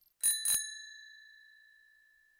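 A bell-ring sound effect, like a small bicycle bell: two quick dings about a quarter second apart, the second ringing on and fading away over about a second and a half.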